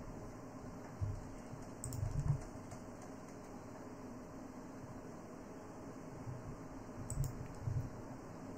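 A few faint computer keyboard and mouse clicks, about one and two seconds in and again near the end, over a steady low hum of room or computer-fan noise.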